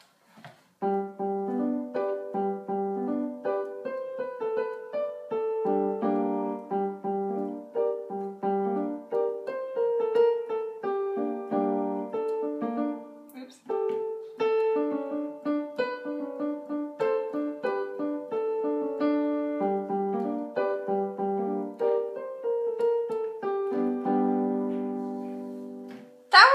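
Piano playing a slow, simple melody over lower accompanying notes, stopping briefly about halfway and ending on a held chord that fades away. It is a former student relearning the instrument from sheet music by eye.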